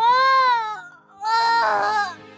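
Newborn baby crying just after birth: two loud wails about half a second apart, each rising and then falling in pitch.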